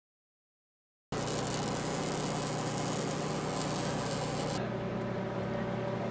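Welding arc hissing steadily, starting about a second in and cutting off after about three and a half seconds to a quieter steady hum.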